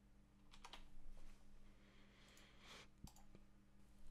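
Near silence with a few faint clicks and light taps, as of a computer keyboard being typed on, in a cluster about half a second to a second in and once more near three seconds.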